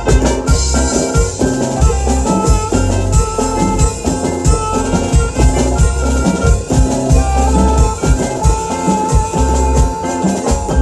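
Live band playing a chilena, with an alto saxophone carrying the melody over a steady drum beat; the saxophone holds one long note near the end.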